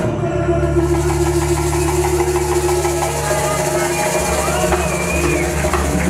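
Salsa music from a live band: Latin percussion over held low notes.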